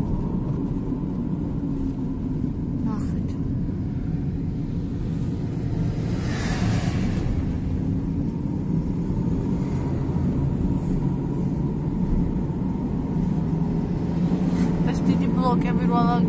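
Inside a moving car's cabin: steady low road and engine rumble while driving, with a brief louder rush of noise about six seconds in.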